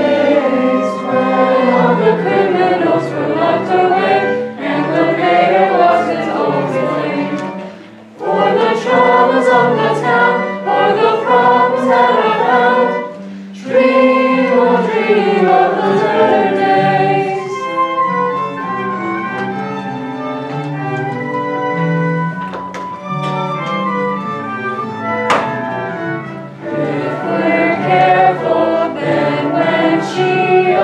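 A group of voices singing a lullaby together over musical accompaniment. Partway through, the voices give way to a stretch of held instrumental notes, and the singing comes back near the end.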